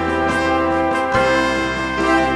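Brass band music: sustained brass chords, changing to a new chord about a second in.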